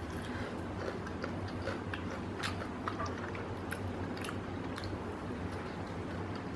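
A person chewing a bite of crispy salted-egg-coated fried chicken drumstick: faint, irregular crunches and mouth clicks.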